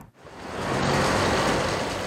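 Road traffic as a vehicle passes: a rush of noise that builds over the first second and fades near the end.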